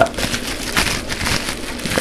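Clear plastic bag and bubble wrap packaging crinkling and rustling as it is handled, a run of small irregular crackles.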